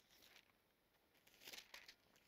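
Near silence with faint rustling of thin Bible pages being handled, mostly a little past halfway through.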